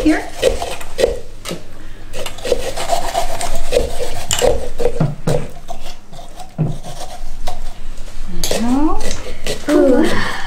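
Small pumpkin-carving saws and scrapers rasping against pumpkin rind and flesh, in many short, irregular strokes.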